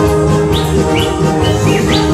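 Live band playing Slovak folk-pop (ľudovky) music: an instrumental passage with held notes and drums, and short high rising notes about every half second.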